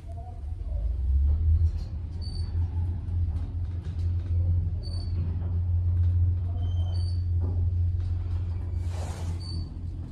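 Car of a Kone-modernized Dover/Turnbull traction elevator travelling upward: a steady low rumble from the ride, with a few short high beeps over it.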